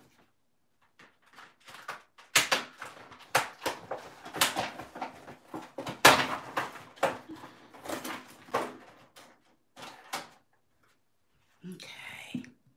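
A dense run of rustles, clicks and knocks from handling things off camera as a Gelli gel printing plate is got out. It starts about two seconds in and dies away a little before the end.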